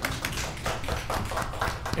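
A rapid, irregular run of taps and clicks.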